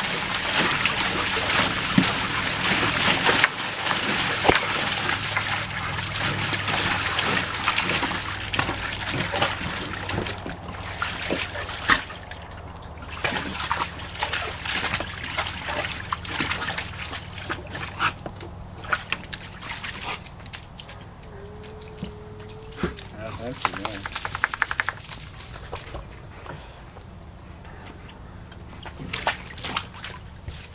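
A dog splashing and pawing water in a plastic wading pool, heavy and continuous for the first dozen seconds, then lighter sloshing and scattered splashes.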